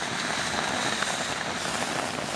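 Steady hiss of rain falling on the forest, with a faint high steady tone over it.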